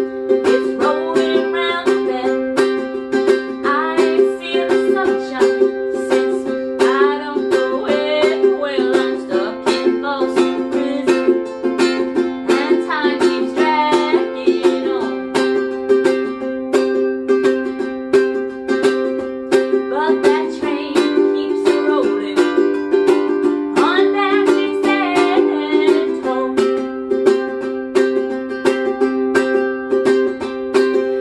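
Ukulele strummed in a steady, fast chordal rhythm with a woman singing along, the chord changing a few times.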